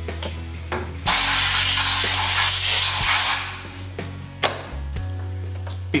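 A loud, even hiss of rushing noise lasting a little over two seconds, starting about a second in and stopping abruptly, over a steady low machine hum.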